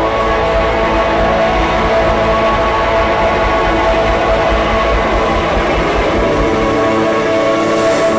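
Live rock band playing an instrumental passage with no singing: electric and acoustic guitars, bass and drum kit. Long held, droning notes sit over a dense, steady wash of sound.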